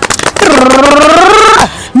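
The tail of a rapid drum roll, then a woman's voice holding one long sung note that rises slightly before cutting off.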